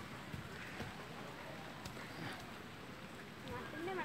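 Faint, indistinct voices in the distance over a soft, steady outdoor background hiss, with a few small ticks.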